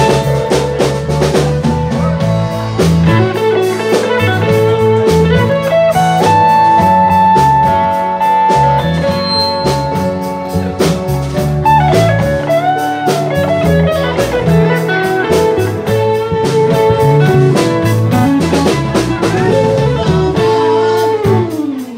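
Live band of electric guitar, electric bass, drum kit and keyboard playing an instrumental passage. The lead line holds one long note about six seconds in, then slides through bent notes.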